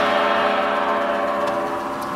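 The final chord of an American Fotoplayer (a theatre player piano with built-in organ pipes and effects) playing a piano roll, held and slowly fading as the piece ends.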